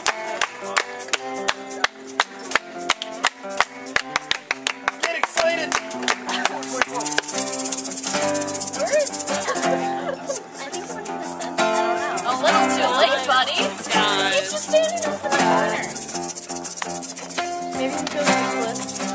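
Live ska band playing: acoustic guitar strummed in fast, choppy strokes over sustained chords, with a voice singing in the second half.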